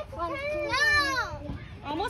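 Children's voices calling out with no clear words for about a second and a half, then dropping away.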